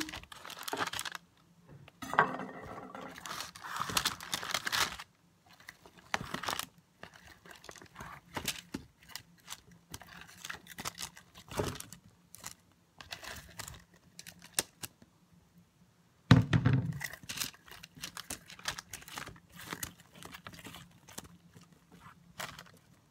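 Cut broccoli, bell pepper and onion pieces being dropped and pushed around by hand on a parchment-lined pan: irregular crinkling of the paper with soft taps of the vegetables, loudest a couple of seconds in and again about three-quarters of the way through.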